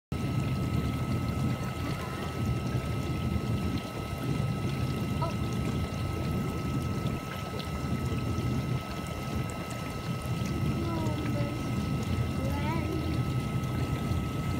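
GE dishwasher running a wash cycle, heard from beneath the machine: a steady low rumble of the pump and circulating water with a thin steady whine above it.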